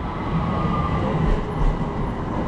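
Electric tram running by: a low rumble under a steady high whine.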